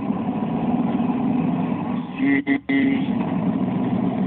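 Steady low rumble of a car heard from inside the cabin, interrupted a little past halfway by a short pitched sound and two brief dropouts.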